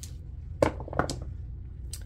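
A pair of dice rolled in a felt-lined dice tray: a few short, soft clicks, two of them about half a second apart and one more near the end, over a low steady hum.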